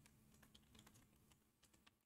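Faint typing on a computer keyboard: a quick run of soft key clicks.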